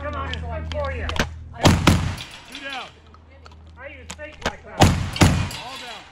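Gunshots fired with black powder, in two pairs: two shots a fraction of a second apart, then about three seconds later two more.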